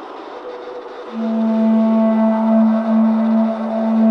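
Electronic music: a soft hiss, then about a second in a low sustained drone with overtones that enters and holds steady.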